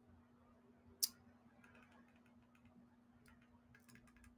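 Near silence with a faint steady hum, broken by one sharp click about a second in and a few faint ticks after it.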